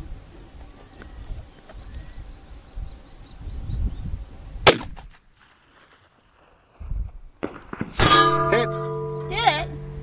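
A single shot from a 45-70 Government rifle fitted with a muzzle brake, a sharp crack about halfway in, over low wind rumble. After a brief near silence, sustained ringing tones start loudly near the end, some of them wavering in pitch.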